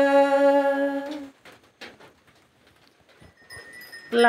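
A singer of Karen 'sor' traditional song holds one long, steady note that ends about a second in. Then there is a pause of near quiet with a few faint clicks, and the next sung phrase starts at the very end.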